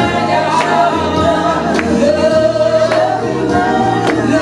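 A congregation singing a gospel song together, held sung notes over low sustained bass, with hand claps keeping a steady beat.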